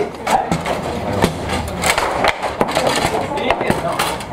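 Table-football game in play: the ball is struck by the plastic players and knocks against the table, making irregular sharp clacks, over voices.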